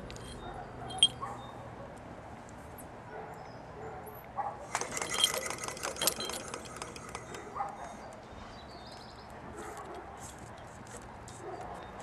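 Light metallic jangling and clinking, densest in a burst of about a second and a half around five seconds in, with scattered faint clicks before and after: small metal parts such as a wire hook being handled.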